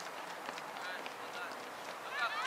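Faint distant voices of players and spectators calling across an open soccer field, over steady outdoor background noise.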